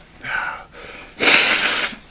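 A man blowing his runny nose: a short breath, then one loud blow lasting under a second.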